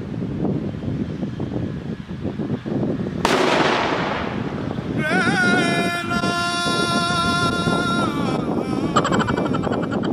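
Firecrackers going off in a rapid string of crackling bangs, with a sharper, louder burst about three seconds in. A long, steady whistling tone follows for about three seconds, then a shorter whistle near the end.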